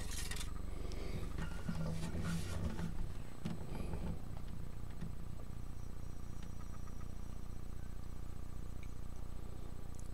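A steady low hum, with faint scrapes and rustles of handling during the first few seconds.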